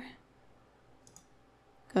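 A couple of faint computer mouse clicks about a second in, against quiet room tone.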